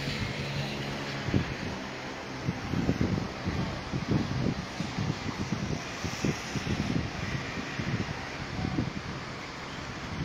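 Steady outdoor background noise: wind buffeting the microphone over a low engine hum, with no one speaking.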